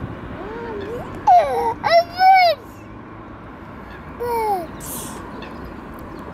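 A toddler's high-pitched wordless vocalising: a few short sliding calls, the loudest about two seconds in, and a falling one near the end.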